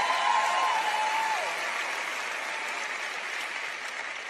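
Congregation applauding after a point in a sermon, the applause slowly dying away. A drawn-out shout rises over it in the first second and a half.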